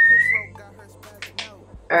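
A woman whistling one clear note that rises slightly and stops about half a second in.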